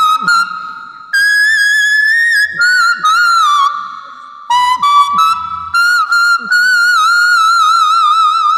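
A small plastic toy whistle-flute (bansi) played by mouth, a melody of sustained high notes with a wavering pitch. The notes come in short phrases with brief breaks between them.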